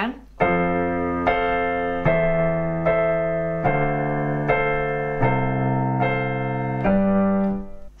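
Piano playing a chord run: F major, A minor over E, D minor seven and F over C, each struck twice at a steady pulse of a little more than one chord a second, with the left-hand bass note stepping down. It ends on a held G major chord near the end.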